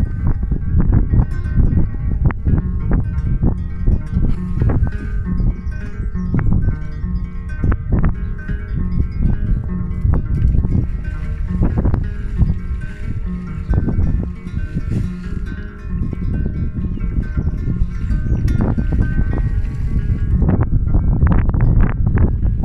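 Kora, the West African calabash harp-lute, played solo: a steady, fast stream of plucked notes over ringing tones, with no singing.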